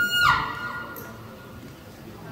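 Solo violin holding a high note that slides quickly down in pitch about a quarter second in and then fades, leaving a soft lull.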